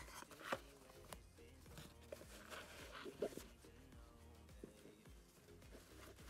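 Faint background music playing quietly, with a couple of soft clicks near the start from handling the cloth dust bag.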